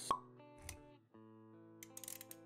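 Animated intro sound effects over soft background music: a sharp pop just after the start, a short low thump a little past halfway, then held synth-like tones with a few light clicks near the end.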